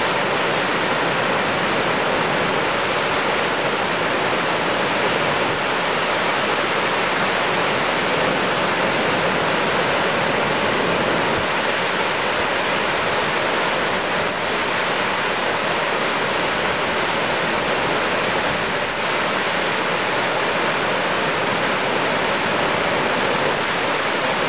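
Lepreau Falls, a wide stepped waterfall, pouring over rock ledges into a pool: a steady rush of falling water.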